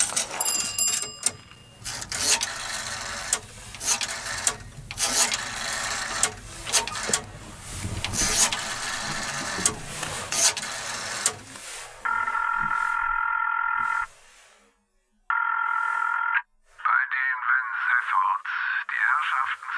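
After a long stretch of dense clattering noise, a telephone rings twice as heard through the receiver, each ring about two seconds long. A thin voice then answers over the line.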